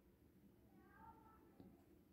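Near silence: room tone, with a faint, brief pitched call about a second in and a tiny click just after.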